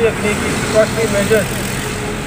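A man's voice speaking in short phrases, over a steady background of road traffic and running engines.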